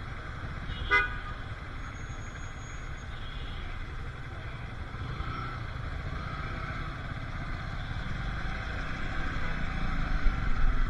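City street traffic heard from a motorcycle: one short vehicle-horn toot about a second in over a steady rumble of engines. The rumble grows louder near the end as the motorcycle pulls away.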